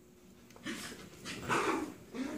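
A dog at play gives a few short barks, starting about two-thirds of a second in, the loudest near the end.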